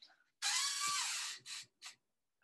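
A man's long breathy hiss into a close microphone, about a second long, followed by two short hissing puffs.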